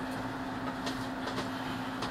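A steady low hum over a hiss of background noise, with a couple of faint clicks near the middle.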